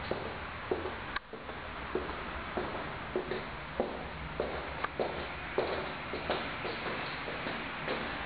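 Footsteps on a wooden floor in an empty, bare room, a step about every two-thirds of a second, over a steady hiss, with one sharp click a little over a second in.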